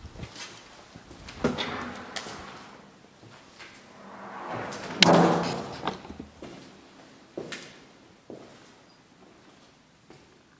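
A door creaking and banging, with the loudest bang about five seconds in, amid smaller knocks of footsteps on a debris-strewn floor.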